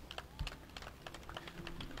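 Faint, irregular small clicks and ticks, several a second, over low background hum in a pause between spoken sentences.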